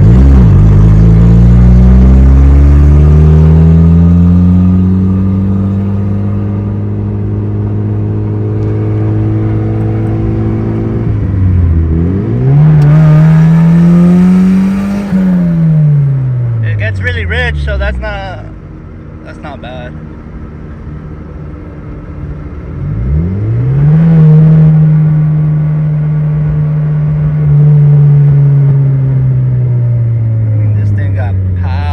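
Turbocharged car's engine heard from inside the cabin while driving: revs climb at the start and hold steady, climb again around the middle, then drop back low for a few seconds before it pulls away again and holds steady. Brief high wavering sounds come in just after the middle.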